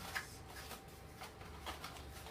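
Faint rustles and light taps of paper being handled, a few short soft sounds about half a second apart, over a low room hum.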